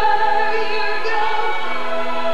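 A woman singing a gospel song into a microphone, amplified through loudspeakers, in long held notes that change pitch a few times, with musical accompaniment under her voice.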